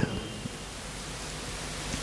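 Steady hiss of background noise, with no clear event in it.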